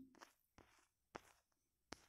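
Near silence: faint room tone with a few soft, brief clicks, two of them a little louder, just past a second in and near the end.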